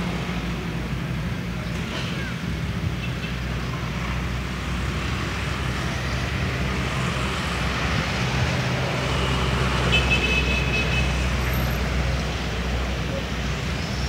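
Steady low hum of an engine running nearby, with road-traffic noise around it; a short high tone sounds about ten seconds in.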